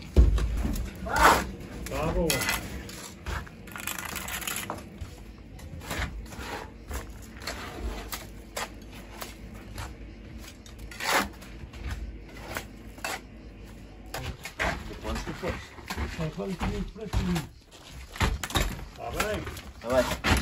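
Steel trowel scraping and knocking wet cement mortar off a hawk and onto a rough stone wall: a long run of short, irregular scrapes and taps. Workers speak a few words of Portuguese at the start and near the end.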